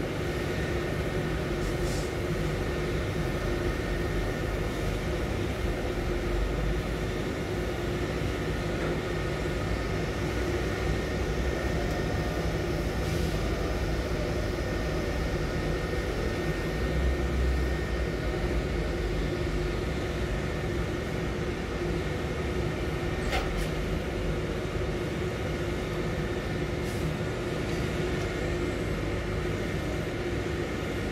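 Heavy machinery running steadily, a constant low rumble with a steady hum and a few brief faint high clicks or squeaks.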